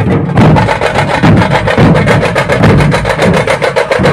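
A group of large barrel drums (dhol) beaten with sticks in a fast, even rhythm, deep booming strokes mixed with sharp cracking hits, after a brief lull just at the start.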